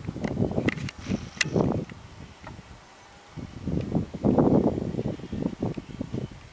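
Wind buffeting the microphone in irregular gusts, with a low rumble. It drops away briefly about halfway through, then returns stronger.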